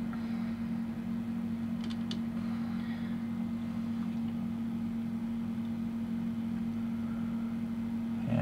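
Small electric motor of a rotating display turntable humming steadily, with a couple of faint ticks about two seconds in.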